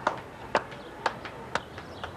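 Hand claps dying away: a few slow, evenly spaced claps, about two a second, each a little weaker than the last.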